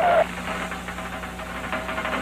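Cartoon sound effect of a small jeep's engine sputtering with a fast, even rattle.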